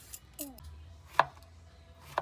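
A large kitchen knife chopping through a peeled gourd onto a plastic cutting board, with one sharp chop a little after a second in.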